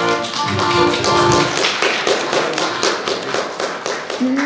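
Folk dance music from an accordion band with a fast, regular run of sharp taps, the dancers' shoes striking a hard floor in time with the dance.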